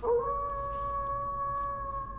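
A single long canine howl: a short upward swoop at the start, then one held note that sinks slightly in pitch.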